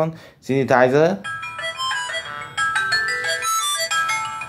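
Ringtone played through a MediaTek-based Q-Mobile Q267 feature phone's speaker: a melody of synthesized electronic notes starting about a second in, on a kind of odd synthesizer.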